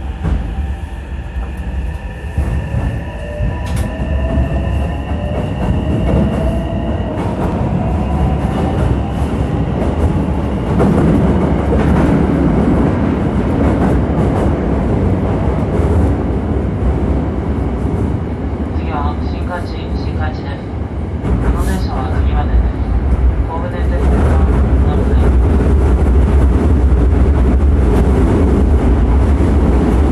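Hankyu electric train running through an underground tunnel, heard from inside the front car: a steady deep rumble of wheels on rail, with a faint rising whine in the first several seconds and brief high squeals around twenty seconds in. The rumble grows louder for the last few seconds.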